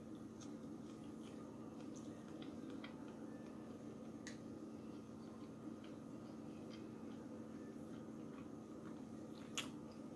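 A person chewing a mouthful of burger, faint and mostly closed-mouthed, with scattered small wet mouth clicks. A steady low hum sits underneath.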